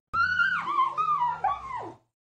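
An animal's high-pitched whining cries, four in quick succession, each dipping in pitch at its end.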